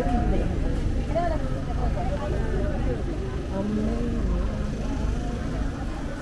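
Chatter of people walking in a procession, scattered voices talking over each other, with a steady low rumble underneath.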